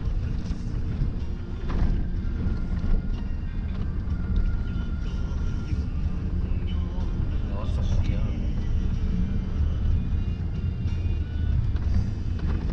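Road noise heard inside a vehicle driving on a dirt forest road: a steady low rumble of engine and tyres on the gravel, with a few brief knocks.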